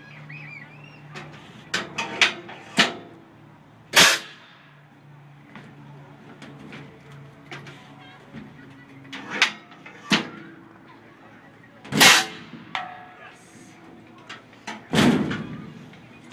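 Compressed-air apple cannons firing: a series of sharp shots, the loudest about 4, 12 and 15 seconds in, each with a short ringing tail, and lighter clicks and knocks in between.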